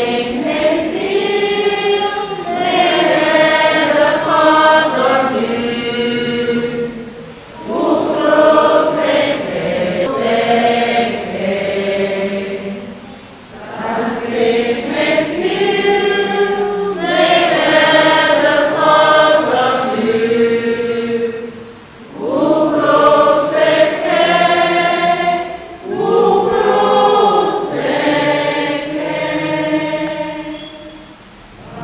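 A church congregation singing a hymn together, in long phrases broken by short pauses for breath.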